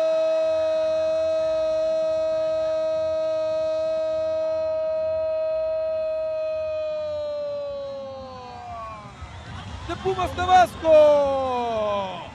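Football commentator's long drawn-out goal cry, 'goooool', held on one steady pitch for about eight seconds, then sliding down in pitch and fading. Short excited shouts follow near the end.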